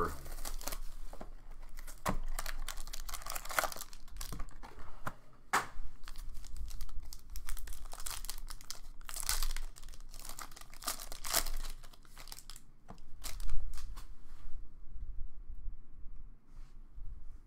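Plastic trading-card pack wrapping crinkling and tearing as it is handled and peeled open, in repeated short rustling bursts, the loudest late on.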